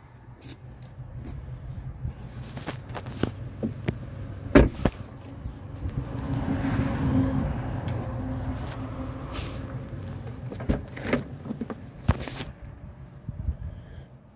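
Car door handling: a loud thud about four and a half seconds in as a door is shut, then scattered knocks, and a cluster of clicks near the end as the liftgate latch releases and the hatch swings open. A low steady hum runs underneath and swells in the middle.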